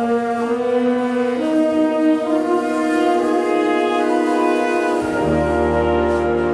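Jazz big band starting a tune with long held horn chords that step up in pitch about a second and a half in; low bass notes come in about five seconds in.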